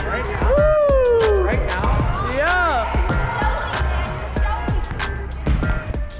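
Music track with a heavy, steady bass beat and a vocal line that glides up and down in pitch.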